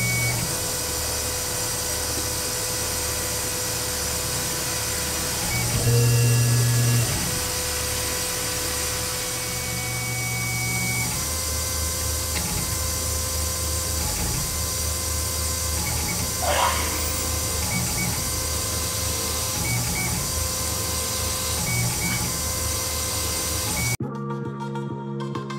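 Tormach PCNC 1100 CNC mill drilling an aluminum block, its spindle running with steady tones over a pulsing low hum. About six seconds in the hum grows louder for a second, and about two-thirds of the way through there is a short sweeping squeal.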